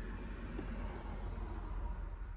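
Steady low background rumble with a faint hiss, with no distinct event.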